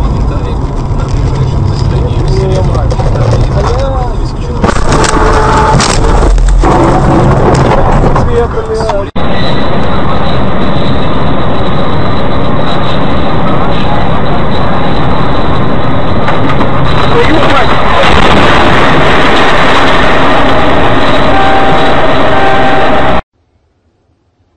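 Loud, distorted noise of a vehicle in motion, with voices in the first part. A sudden cut about nine seconds in brings a steady, loud rushing noise, which stops abruptly about a second before the end.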